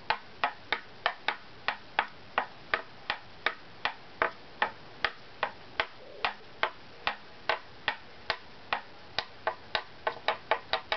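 Violin back plate tapped with a thin stick: a steady series of light clicks, about two and a half a second, coming a little faster near the end. It is tap-tone tuning, tapping along marked strips of the plate to hear where the pitch runs high, the spots to be scraped thinner.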